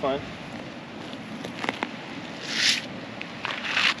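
Two short rustling scrapes as a flexible plastic fish-measuring mat and the fish on it are picked up off the pavement and the mat is folded, the first about halfway through and the second near the end.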